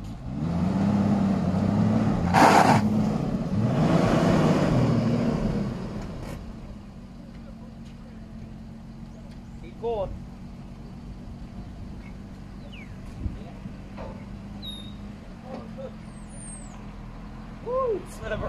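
A motor vehicle engine running, its pitch rising and falling for the first six seconds or so, with a short loud hiss about two and a half seconds in. It then settles to a steady, quieter low hum.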